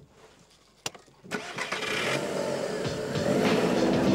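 A 1999 SEAT Toledo's 1.8-litre engine starting about a second in, after a single click, then revving as the car pulls away. Background music comes in over it.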